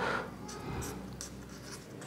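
A pen writing on paper: a run of short, irregular scratching strokes as a word is written out.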